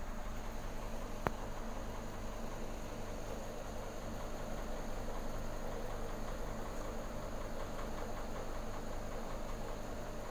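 Aquarium filtration running: an air-driven sponge filter and an internal power filter give a steady hum under a hiss of bubbling water. A single sharp click sounds about a second in.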